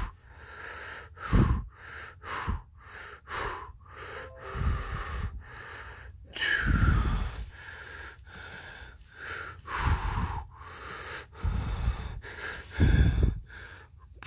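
A person's breathy mouth noises: a string of separate puffs and gasps every second or so, the heaviest with a low thump, and one falling sweep about halfway through.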